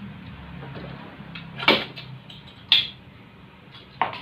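Two sharp knocks about a second apart as a goped's expansion-chamber exhaust pipe is handled and taken off the two-stroke engine, over a low steady hum.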